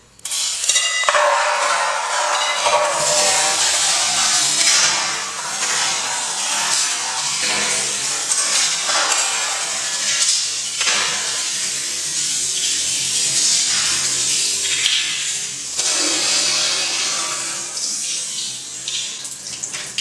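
Ice water poured from a glass bowl over a person's head and splashing down into a bathtub: a loud, steady rush of splashing water that starts suddenly and eases off a little near the end.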